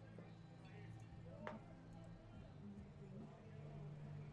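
Near silence: faint ballpark background with a low steady hum and faint distant voices.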